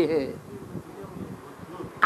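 A man's voice finishes a word, then pauses. In the pause there is only faint, low background noise with a slight buzz.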